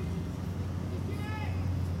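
A spectator's shouted call of encouragement, one drawn-out call about a second in, over a steady low hum.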